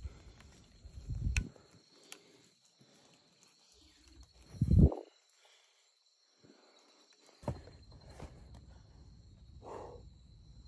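Footsteps and jostling of a hiker climbing a forest trail, with two louder dull bumps, one about a second in and one just before the fifth second, under a steady high-pitched drone of insects.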